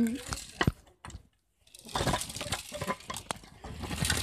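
Rustling and light clicking and knocking of a phone being handled and moved about, with a brief drop to near silence about a second in.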